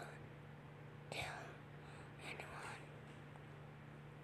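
Faint whispering: two short whispered bursts, about a second and two and a half seconds in, over a steady low hum.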